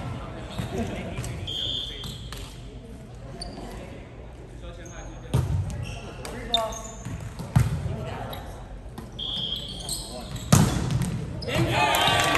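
Volleyball being struck during a rally in a gym, four sharp hits over the second half, the loudest near the end, ringing in the hall. Two short sneaker squeaks on the hardwood floor and brief shouts from players come in between.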